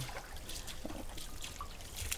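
Faint trickle of spring water running, with a few small drips.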